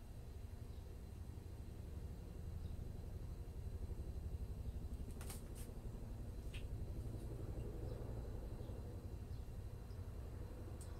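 Quiet room tone with a steady low hum, broken by a few small clicks about five and six seconds in as makeup items are handled and put away.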